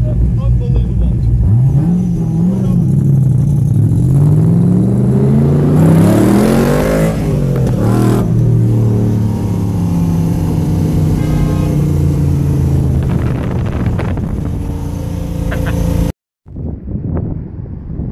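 Factory Five GTM's V8 engine accelerating hard from low speed, heard from inside its cabin: the pitch climbs steadily for several seconds, drops sharply at a gear change, then holds a steady pull. The sound cuts off abruptly near the end.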